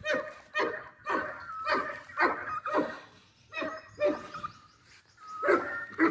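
A dog barking in a quick series of short barks, about two a second, then a few more spaced barks after a short pause.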